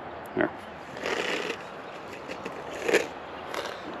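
Soft rustling and crackling, in a few short bursts about a second in and again near three seconds, from hands and a jacket sleeve close by as bean seeds are passed over and pressed into holes in the soil.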